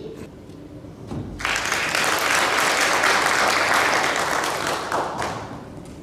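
Audience applauding. The applause breaks out about a second in, holds for about four seconds, then dies away near the end.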